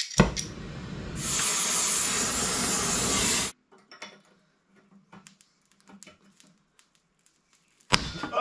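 Handheld gas torch flame hissing as it heats rusted rear suspension hardware: a click, a softer hiss, then a loud steady hiss from about a second in as the flame is turned up, cutting off suddenly about halfway through. A few faint clicks follow.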